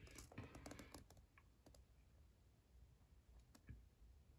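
Near silence with a few faint, soft clicks and rustles of a hand handling the paper pages of a hardcover book, most in the first second and another about three and a half seconds in.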